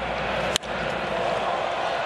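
A single sharp crack of a wooden baseball bat hitting a pitch about half a second in, over steady stadium crowd noise.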